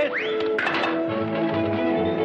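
Orchestral film music. In the first second a short rising glide and a brief rush of noise give way to steady held notes over a pulsing bass.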